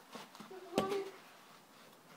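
A child's voice calls out "one", with a single sharp knock about the same moment, a little under a second in.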